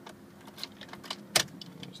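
Keys jangling and clicking in a 2002 Honda CR-V's ignition switch as the key is turned to the on position, with one sharp click about a second and a half in, just before the engine is cranked.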